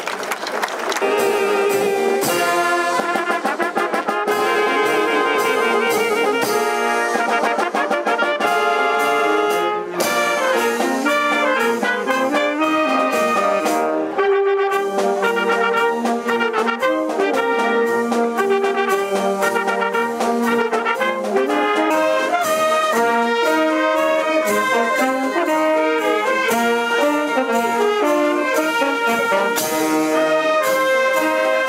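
Marching wind band playing together: trumpets, saxophones, French horns and tuba.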